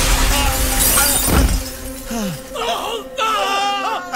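A crash of breaking glass in the first second or so, over a steady drone from the film's score. In the second half, voices rise and fall in pitch over the same drone.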